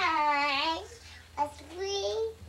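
A small child's wordless sing-song vocalizing: one long held call that dips and rises in pitch, then a short sound and a rising call near the end.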